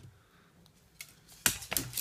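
A few sharp knocks and clicks in the second half, the loudest about one and a half seconds in: a dog bumping into the camera's tripod.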